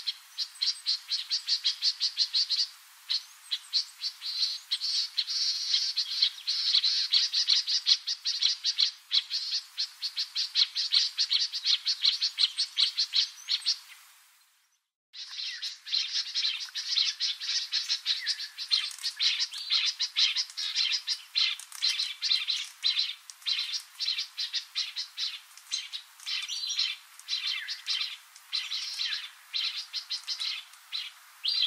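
Yellow-breasted apalis calling: a fast, steady series of short, high repeated notes, about four or five a second. The calling breaks off briefly about halfway through and then carries on.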